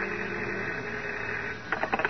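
The tail of an organ music bridge dies away. Near the end comes a short burst of rapid clicking from a telephone bell sound effect, a phone ringing.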